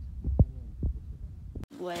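Low rumble with two dull thumps about half a second apart. It cuts off suddenly near the end, where a voice starts.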